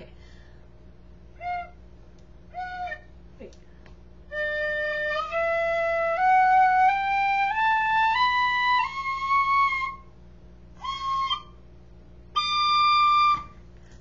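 Irish tin whistle: two short single notes, then a slow stepwise rising scale of about eight notes played as a do-re-mi warm-up, followed by a short note and a held high note near the end.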